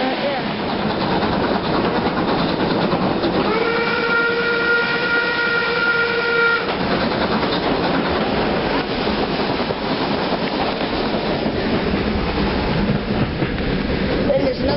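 Steam locomotive whistle sounding one steady note for about three seconds, starting a few seconds in and cutting off sharply, over the continuous running noise and rail clatter of a moving train.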